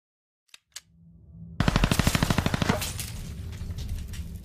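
Logo-intro sound effect: two sharp clicks, then a burst of rapid automatic gunfire lasting about a second at roughly eleven shots a second, trailing off into a low rumble.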